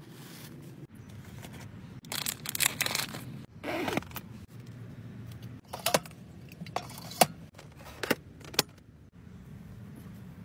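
Rustling and handling noises, then several sharp metallic clinks and clicks as aluminium drink cans are set into a small portable mini fridge.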